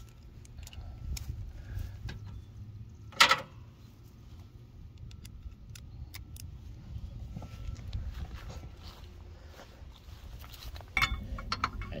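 Scattered light metallic clinks and handling noise from hand tools being picked up and fitted, with one sharp knock about three seconds in, over a low rumble.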